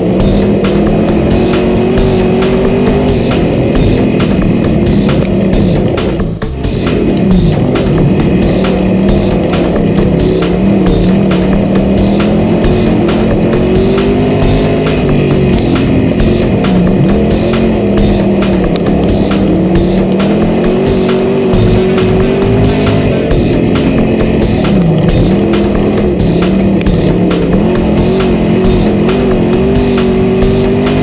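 IMCA Sport Modified dirt race car's V8 engine heard from inside the cockpit at racing speed, its pitch dropping as the driver lifts for the corners and climbing again on the throttle down the straights, the sharpest lift about six seconds in. Background music plays under the engine.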